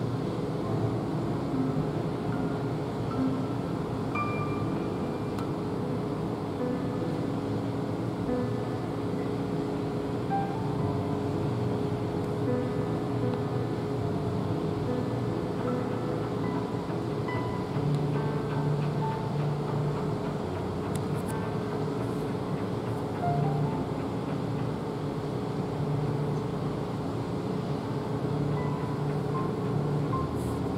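A steady low mechanical hum with a constant drone. Faint short musical notes at changing pitches, like distant music, are scattered over it.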